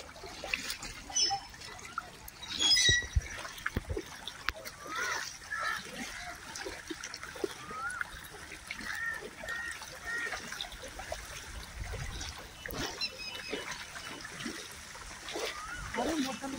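A cow and a person wading through shallow floodwater, their steps splashing in the water.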